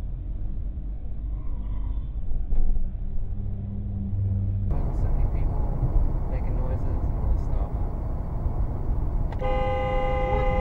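Car road noise heard from inside the cabin: a steady low engine and tyre rumble, which changes character about halfway through. Near the end a car horn sounds, held as one steady blast.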